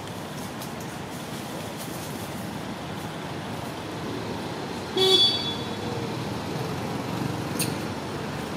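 Steady background traffic noise, with one short horn-like toot about five seconds in.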